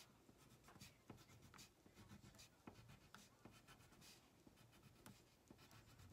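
Faint scratching of a wax crayon on paper in many short, quick strokes.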